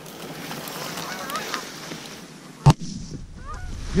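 Canada geese honking overhead, with a single shotgun shot about two and a half seconds in.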